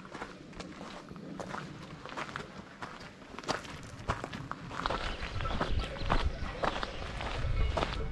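Footsteps on a gravel path, about two steps a second. A low rumble joins in about five seconds in.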